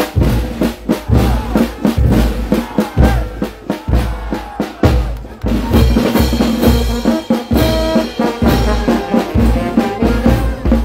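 Peruvian brass band (banda de músicos) playing: bass drum and cymbals keep a steady beat. The wind section (saxophones, clarinets and brass) comes in about halfway through with sustained chords.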